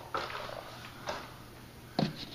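Two light metallic knocks from a mini-split's sheet-metal wall-mounting plate as it is handled and tugged, the first just after the start and a fainter one about a second in: the plate, freshly re-anchored, stays firm on the wall.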